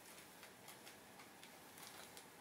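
Near silence: a saucepan heating over a gas burner, with faint, irregular ticks, a few per second, over a faint steady hiss.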